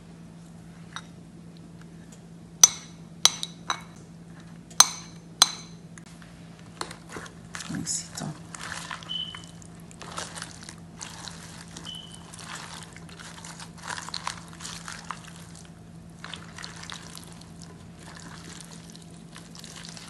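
A spatula knocks against glassware five times in the first few seconds, each a sharp ringing clink. Then comes the soft wet rustling and scraping of a cabbage and cucumber salad being tossed with ranch dressing in a glass bowl. A steady low hum runs underneath.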